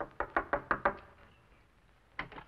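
Knocking on a wooden front door: a quick run of about six raps within the first second.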